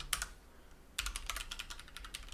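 Typing on a computer keyboard: a few keystrokes at the start, a short pause, then a quick run of keystrokes from about a second in.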